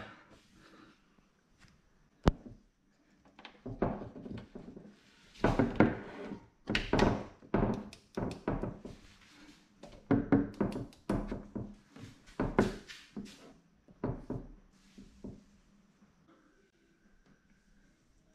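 Irregular thunks, knocks and clicks of drone parts being handled and set down on a tabletop, starting a few seconds in and dying away a few seconds before the end.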